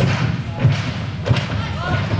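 Dull thuds of a power tumbler's hands and feet striking the sprung tumbling track, about three strikes roughly two-thirds of a second apart, over a murmur of crowd voices.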